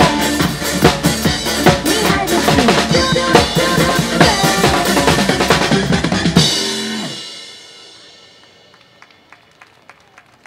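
Drum kit played live over a pop song's backing track, bass drum, snare and cymbals, up to the song's ending. The music cuts off about six and a half seconds in, the last hit rings out and fades over about a second and a half, and then only faint background noise with a few light clicks is left.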